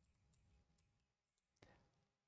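Near silence with a few faint clicks of computer keys, one a little louder near the end.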